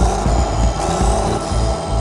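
Background music with a steady low beat and a thin high tone that rises and then falls.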